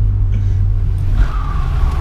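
Vauxhall Astra being driven, heard from inside the cabin: a steady low engine and road drone. A thin higher tone joins in about halfway through.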